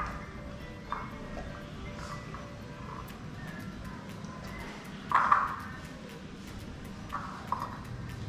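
Background music, with a few short knocks and pings as pieces of jackfruit are dropped into a stainless-steel blender jar, the loudest about five seconds in.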